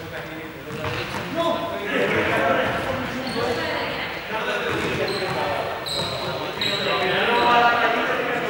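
Several people talking at once in a reverberant sports hall, with occasional thuds of small objects hitting the floor and a few brief high squeaks.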